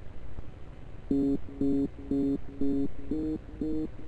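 Electronic house music from a live DJ mix: a low rumbling bass, then about a second in a synthesizer starts a riff of short repeated notes, about two a second.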